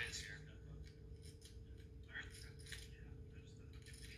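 Poker chips clicking lightly several times as players handle them at the table, heard faintly over a steady low hum from a TV broadcast played back on a screen, with faint murmured speech.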